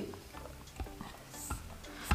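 Faint background music with a few light clicks.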